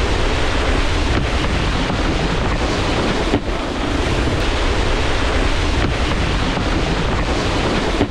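Wind buffeting a moving action camera's microphone, over the steady hiss of water spraying off a wakeboard as it skims across a lake.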